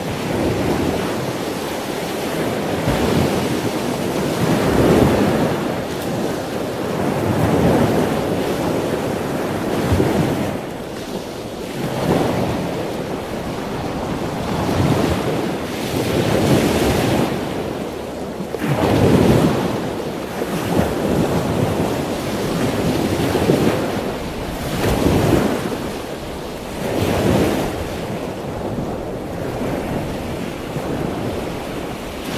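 Sea waves breaking on a shore with wind, a rushing noise that swells and falls every few seconds.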